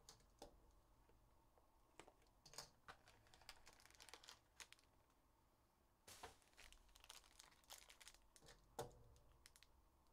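Faint crinkling and tearing of plastic wrapping as a 2022-23 Upper Deck Ultimate Collection hockey card box is unwrapped and opened. It comes in short scattered crackles, with a brief lull about halfway through.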